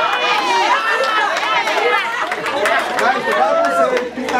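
A room full of people laughing and chattering at once, many voices overlapping in reaction to a joke.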